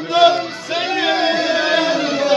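Several men singing together, holding long wavering notes, with a short break about half a second in.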